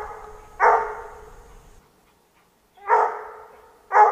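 Bluetick coonhound barking at a squirrel up a tree: three short barks, the second and third after a quiet gap, each fading away.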